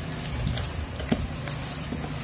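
Soft rustling of a clear plastic sleeve with a few light clicks as a smartphone in its packaging is picked up and handled.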